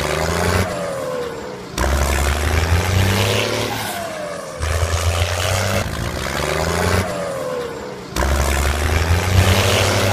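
Tractor engine running and revving as a repeating sound, a low steady drone with a dropping whine that comes round about every three seconds.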